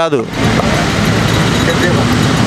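Loud, steady motor-vehicle noise with a faint low hum, starting abruptly just after a man's last word and holding even.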